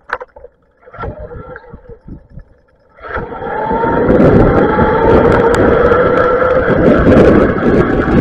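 Electric bike setting off on a wet road: about three seconds in, a loud rumble of wind on the camera microphone and tyre noise builds quickly and holds, with a rising whine over it. Before that there are a few light knocks.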